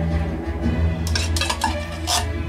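Metal spoon scraping and clinking against a small tin can and spreading pizza sauce on dough, with a few short scrapes about a second in. Background music plays steadily underneath.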